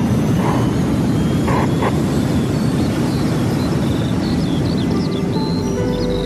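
Intro music under a dense rushing, whoosh-like sound bed, with chirping birdsong coming in near the end.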